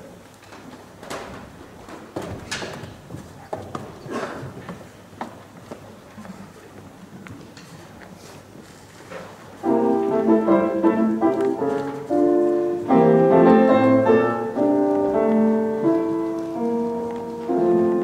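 A grand piano starts playing about halfway in, with held chords changing every half second or so: the introduction to a choral folk song. Before it there are a few seconds of faint scattered knocks and shuffling.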